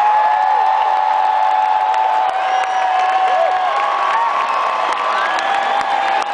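Large concert crowd cheering and whooping as a rock song ends, with long held yells and whoops over the steady roar of the audience.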